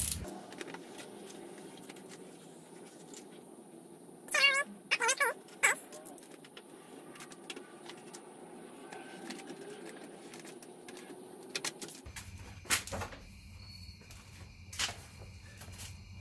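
Faint steady background hum, broken about four to six seconds in by three short, high, wavering cries. A few sharp clicks come near the end.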